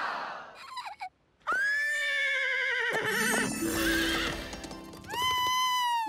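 A cartoon pony whinnying: a high, wavering call about a second and a half long, over background music. A second, shorter high call follows near the end, falling in pitch as it stops.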